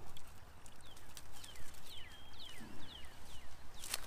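A songbird calling: a run of short, quick down-slurred chirps through the middle. A sharp click comes just before the end.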